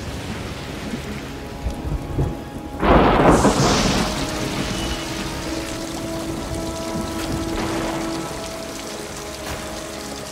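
Rain-and-thunder ambience: a steady hiss of rain with one loud thunderclap about three seconds in. A low sustained musical drone comes in under it shortly after.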